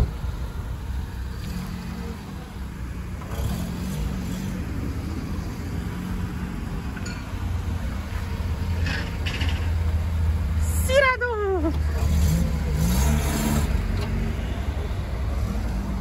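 Engine of a lowered Chevrolet Prisma running as the car creeps along at low speed. The low rumble grows louder about halfway through, as the car comes close.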